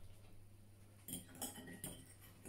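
Forks clinking and scraping lightly against a bowl of noodles, with a few faint clinks in the second half, over a steady low hum.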